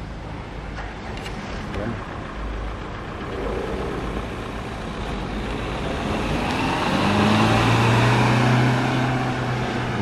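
Renault Clio hatchback driving on a paved lot, its engine running with tyre noise. The sound grows louder over the last few seconds, with a steady engine hum strongest between about seven and nine seconds in, then eases slightly.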